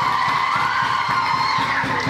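A woman singing into a microphone over music, holding a long high note over a quick rhythmic beat.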